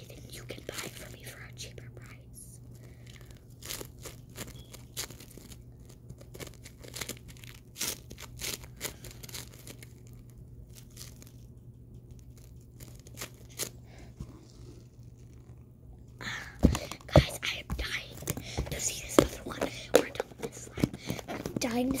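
Bead-filled slime being squished and worked by hand, giving faint, irregular crackling and popping clicks. From about 16 seconds in, the crackling becomes louder and denser, with plastic container handling.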